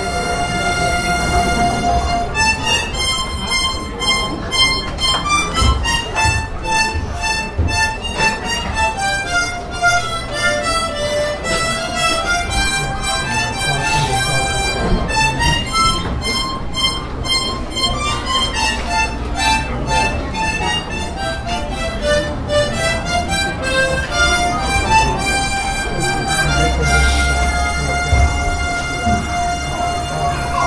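A small ensemble of children playing harmonicas together: a slow melody of stepping notes that opens on a long held note and settles onto another long held note near the end.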